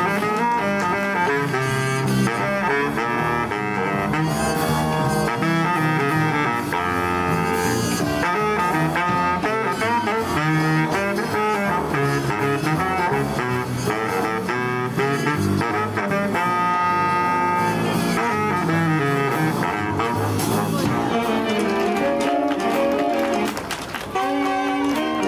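Student jazz big band playing live: saxophone section and trumpets over guitar, bass and drums, with a held ensemble chord about two-thirds of the way through.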